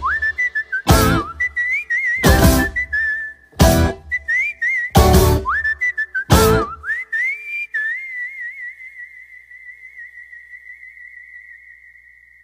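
A person whistling a tune, punctuated by loud full-band hits about every 1.3 seconds. After about seven seconds the band stops and the whistle holds one long wavering note that slowly fades.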